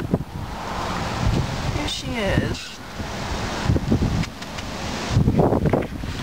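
Wind buffeting the phone's microphone in uneven gusts, with handling rustle and knocks as the phone is moved. A short call slides down in pitch about two seconds in.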